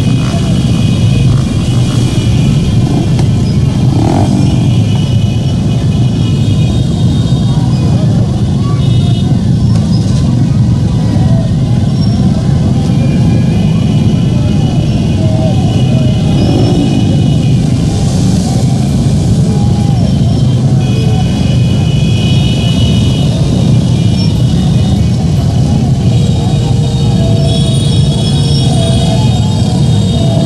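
Many motorcycle engines running together in a dense, slow-moving crowd, a steady loud mass of sound with voices and music over it.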